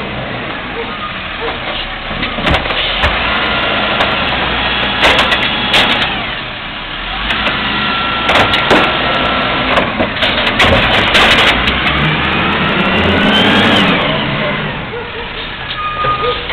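Amrep automated side-loader garbage truck emptying a cart: the engine runs and revs to drive the hydraulic arm, with repeated clanks and bangs as the cart is lifted and shaken over the hopper. A rising whine comes in about twelve seconds in.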